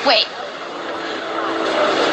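A steady droning noise that grows gradually louder, after a single spoken word at the start.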